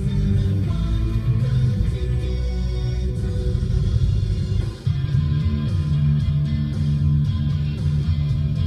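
Guitar-based music playing on a car radio, with a brief dip in level a little past the middle.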